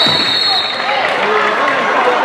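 A referee's whistle blast of under a second at the start, over the shouting voices of players and spectators in an indoor sports hall.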